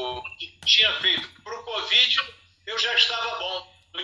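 Speech only: a man talking over a phone video call, in quick stretches with short pauses.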